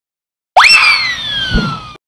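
Cartoon falling-whistle sound effect: a whistle that shoots up in pitch, then glides slowly down, with a dull thud about a second and a half in.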